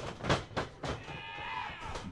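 About four quick thumps of wrestlers' bodies and feet hitting the wrestling ring in the first second, then a held, pitched sound lasting about a second that rises slightly near its end.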